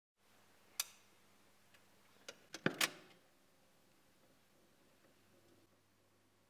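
Reel-to-reel tape recorder's controls clicking: one sharp click about a second in, then a quick run of four clicks near the three-second mark, over a faint steady electrical hum.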